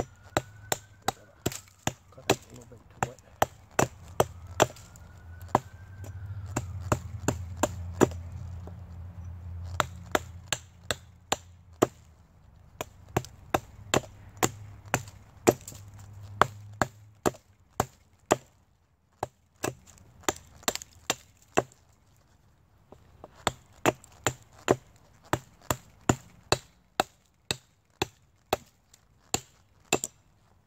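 Repeated chopping strikes of a short hand-held blade on an old pine fatwood knot, trimming the weathered wood off it, about two strikes a second in runs with brief pauses.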